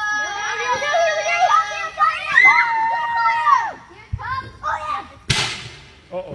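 High children's voices squealing and shouting for the first few seconds, then a single short, sharp whack about five seconds in.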